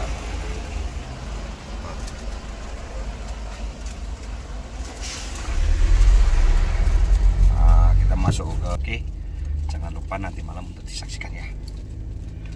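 Car engine and road rumble heard from inside the cabin as the car pulls away from a stop, swelling louder for a couple of seconds near the middle, then easing off.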